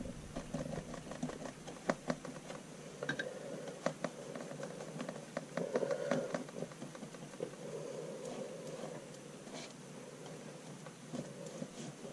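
Paintbrush working watercolor paint in a plastic palette well: faint soft swishing with scattered light taps and clicks.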